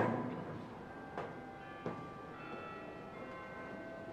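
Bells ringing: a loud strike at the start, then two lighter strikes about one and two seconds in, with several ringing tones held under them.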